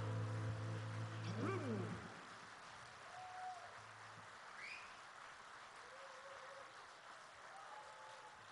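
The band's final held chord on electric guitars rings out and ends with a falling pitch slide about a second and a half in. The stage then goes quiet apart from a few faint, short whistle-like glides.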